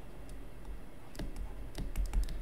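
A few faint clicks and taps of a stylus on a tablet screen as letters are handwritten, over a low steady hum.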